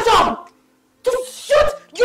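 A woman wailing and sobbing loudly in short, broken cries: one cry ends shortly after the start, then after a silent gap two more short cries come about a second in, with another starting near the end.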